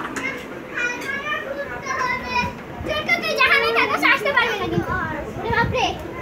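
Young children's high-pitched voices talking and calling out over each other during a game, busiest through the middle of the stretch.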